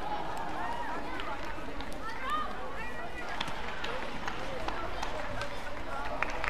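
Badminton rally: shoes squeaking briefly and repeatedly on the court mat, with sharp clicks of rackets striking the shuttlecock over steady arena crowd noise.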